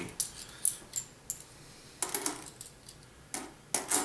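Half-dollar coins clinking against one another as they are shuffled in the hand and set onto a stack: scattered light metallic clinks, a few close together about two seconds in and a sharper pair near the end.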